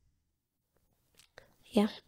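A pause in a conversation: near silence for about a second, then faint breath and mouth sounds and a spoken "yeah" near the end.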